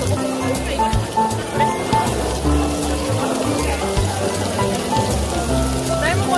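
Pork belly and pork intestines sizzling on a hot griddle, a steady hiss, under background music with held notes and a bass line.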